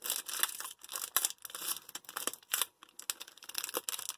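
Wrapper of a 2003 Donruss Diamond Kings baseball card pack being pulled open by hand: irregular crinkling and tearing crackles of the packaging.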